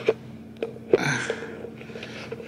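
Handling noise: three light knocks and a brief rustle as things are moved about close to the microphone.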